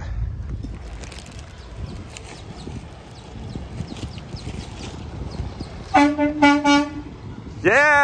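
Enclosed car-hauler semi truck's horn tooting three short times at one steady pitch, over the low rumble of the truck rolling out.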